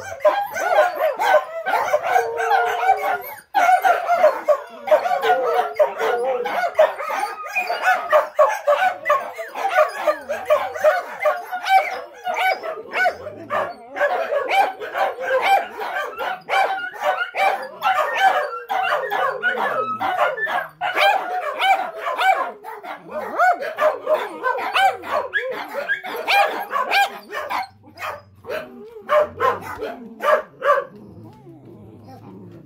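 Several dogs howling together in a continuous, overlapping chorus of wavering howls, broken by many short barks and yips.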